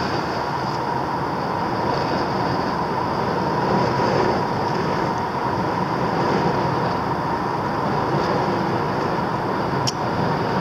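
Steady road and engine noise inside a moving car cruising at a constant speed, with a faint steady whine.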